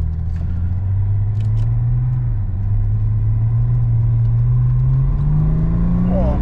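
Tuned BMW 535d's twin-turbo 3.0-litre straight-six diesel heard from inside the cabin under hard acceleration. The engine note rises, drops with a gear change about two seconds in, then climbs again and grows louder toward the end.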